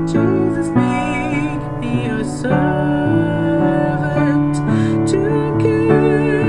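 A woman singing a slow hymn with vibrato over a piano accompaniment.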